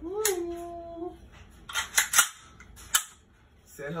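A man's voice holds one drawn-out admiring note for about a second. Then come a few sharp clicks, the loudest close together about two seconds in and one more near three seconds, as a new Extar 556 AR pistol is lifted from its box and handled.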